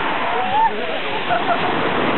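Small sea waves breaking and washing up a pebble shore in a steady rush of surf, with faint voices of people in the water over it.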